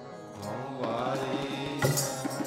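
Gurbani kirtan: a harmonium holding a steady drone, joined about half a second in by a man's voice singing in sliding melodic phrases. A tabla stroke sounds sharply near the end.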